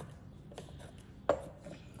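A few light taps and one sharper knock a little over a second in: a plastic blender cup being handled and set down on a wooden cutting board.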